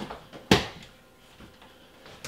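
Kitchen cabinet door being opened, with one sharp click or knock about half a second in and a softer click at the start.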